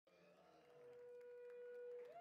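Near silence, with one faint steady tone fading in as the sound begins.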